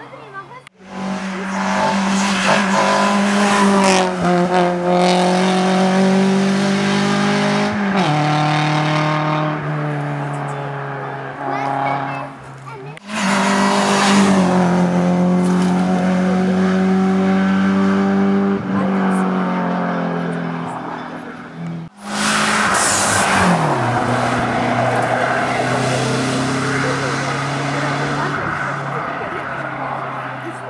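Competition cars climbing a slalom hill-climb course at full throttle, heard in three separate passes joined by abrupt edits. Each engine runs at high revs, with sudden drops in pitch at the gear changes.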